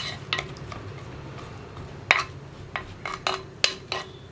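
A ladle stirring drumstick pieces in a clay pot, clacking against the pot's sides several times at uneven intervals.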